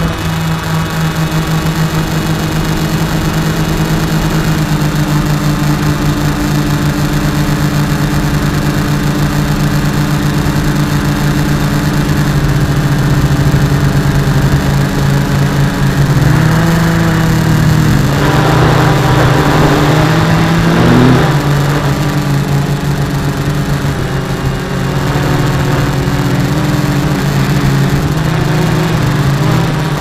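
Small electric quadcopter's motors and propellers whining steadily. About halfway through, the pitch swings up and down several times as the throttle changes, then settles again.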